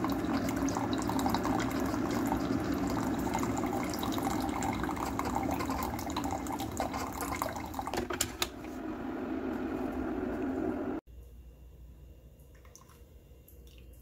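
Single-serve coffee brewer dispensing coffee into a mug: a steady pump hum with the stream of coffee running into the cup, with a few clicks about eight seconds in. It cuts off suddenly about eleven seconds in, leaving a much quieter stretch with a few faint clicks.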